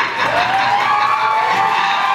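Audience cheering as the performance ends, with one voice giving a long whoop that rises at the start and is then held on one pitch.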